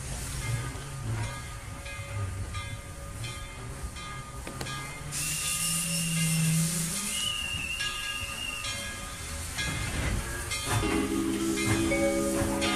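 Recorded train sound effect on a dance backing track: a steady clatter of wheels on rail joints about twice a second, then a loud hiss of steam with a high steady whistle tone about five seconds in. Music starts near the end.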